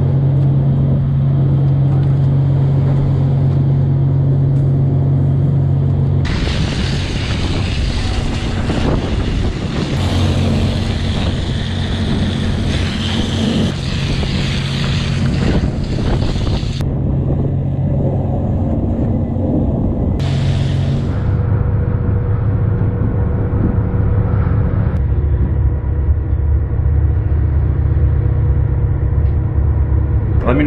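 Steady low drone of a fishing trawler's engines and deck machinery. From about six seconds in to about seventeen, a loud hiss of a deck hose spraying water rides over it. Near the end, the boat rumbles under way at sea. The mix changes abruptly several times.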